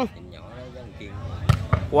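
A volleyball struck hard about one and a half seconds in, followed just after by a second, softer knock, over the low chatter of a crowd.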